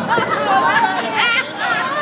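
Several people chattering close by, high-pitched voices talking over one another amid a crowd.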